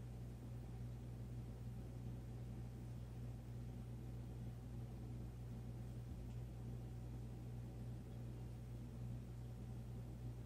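Quiet room tone: a steady low hum with no distinct events.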